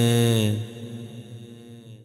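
A man's voice singing a devotional manqbat, holding a long drawn-out note that fades away about half a second in.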